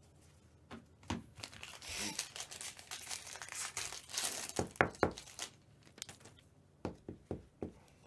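Foil wrapper of a Bowman Draft Jumbo trading-card pack being torn open and crinkled, crackling from about a second in to past the middle, followed by a few sharp taps near the end.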